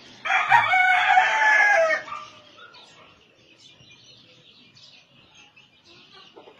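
A rooster crows once, a long call of nearly two seconds that starts just after the opening and drops slightly in pitch as it ends. Faint clucks and chirps from other chickens follow.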